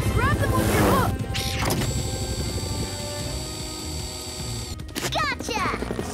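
Animated-show soundtrack: background music under sound effects, with brief wordless character exclamations near the start and again about five seconds in.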